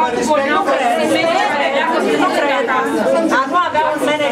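A crowd of people talking over one another, many voices at once with none standing out.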